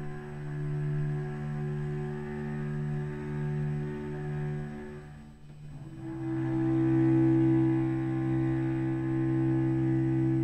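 Solo cello bowing a long sustained note. The note breaks off about five seconds in, and a second, louder held note follows.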